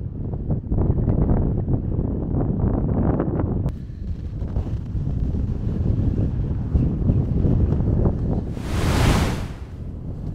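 Strong wind buffeting the microphone in gusts, a deep, uneven rumble across the open sand dunes. Near the end a short, loud whoosh lasts about a second.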